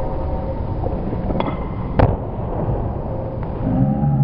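Barbell snatch being caught. Two sharp knocks about half a second apart, the second louder, as the lifter's feet land on the platform and the loaded bar with bumper plates clanks into the overhead catch. Under it runs a steady low rumble.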